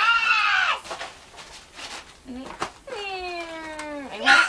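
Two high-pitched cries: a loud squeal at the start that falls away within the first second, then, after a pause, a long smooth cry that slides slowly down in pitch near the end.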